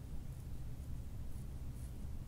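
Faint, soft rustling of hands moving over hair and skin on the head, a couple of light brushes in the second half, over a steady low room hum. No joint crack is heard.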